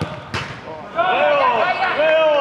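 One sharp thud of a football being struck on a five-a-side pitch. About a second later several men's voices cry out loudly together in long drawn-out shouts.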